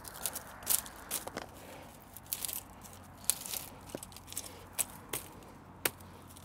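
Handling noise: irregular dry crackles, snaps and rustles as hands work among hazel bean poles and old dried stems.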